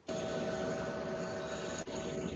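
Steady machine hum and hiss with a faint held tone, from a phone recording of a running mechanical ventilator played back over a video call. It starts abruptly and drops out for an instant near the end.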